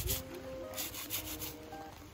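Stiff-bristled hand scrub brush scrubbing a wet, soapy cloth in a plastic basin: a quick run of brush strokes about a second in, over background music.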